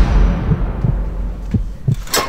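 Horror sound effect: a deep boom dying away into a low rumble under a slow heartbeat, soft lub-dub thumps about once a second.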